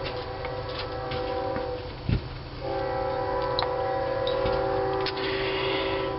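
Steady drone of several held tones, breaking off for under a second about two seconds in and then resuming. A single low thump comes at the break, and a few faint clicks sound over the drone.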